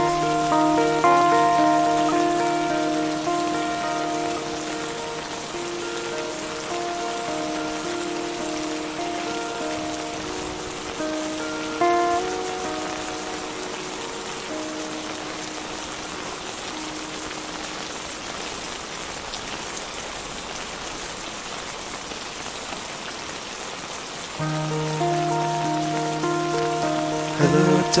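Steady rain falling on a surface, a continuous hiss. Over it, soft sustained instrumental notes fade away over the first half, leaving mostly rain, and return with a low held note near the end.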